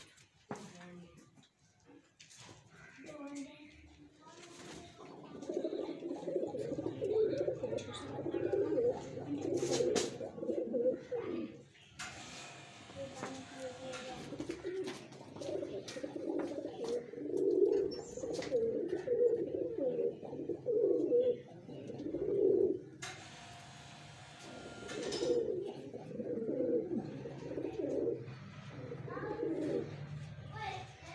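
Domestic pigeons cooing over and over in a loft, low throaty pulsing calls that run on nearly without pause. Twice the cooing gives way to a couple of seconds of hiss.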